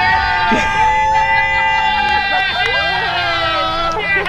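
Several people cheering with long, drawn-out calls at different pitches, overlapping; the longest breaks off about two and a half seconds in and further held calls follow.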